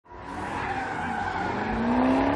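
A car spinning donuts, its tires squealing continuously against the pavement as they spin and slide, with the engine revving underneath, its pitch rising in the second half.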